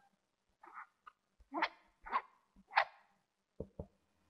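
A dog barking three times in quick succession, after a couple of fainter short calls, followed by two dull thumps near the end.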